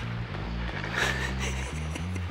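Background music carried by low, sustained bass notes that step from one pitch to the next every few tenths of a second.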